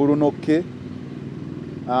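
A man's voice for about half a second, then a pause filled by a steady low engine hum running in the background.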